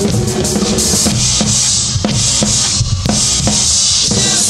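Drum kit played along to a rock song's recording: snare and bass drum hits, with a cymbal wash over them.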